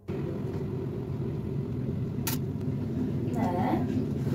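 Steady low rumble of a running machine, starting abruptly, with a single sharp click about two seconds in and faint voices near the end.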